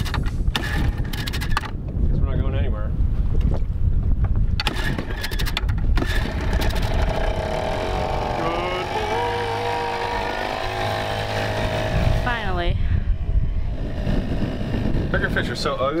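Small outboard motor on an aluminium dinghy running as the dinghy pulls away, with a steady low rumble of wind on the microphone.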